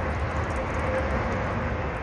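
Steady low rumble of road traffic on an elevated highway, heard outdoors, cutting off abruptly at the end.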